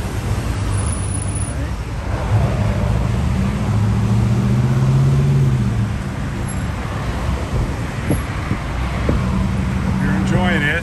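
Freeway traffic noise from a moving car: steady tyre and road noise over a low engine drone, which swells for a couple of seconds around the middle as vehicles pass alongside.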